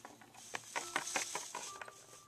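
Small plastic toy figurines being handled and set down on a tabletop: a quick string of light clicks and taps, with soft rustling.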